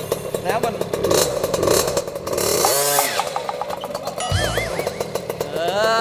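Small 50cc mini dirt bike engine running, a steady fast putter. About two-thirds in, a short wobbling electronic sound effect is laid over it, and near the end a man shouts.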